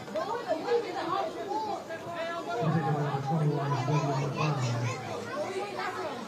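Indistinct overlapping voices of soccer players calling out to one another on the pitch during a corner-kick setup, with a low steady drone for about two seconds in the middle.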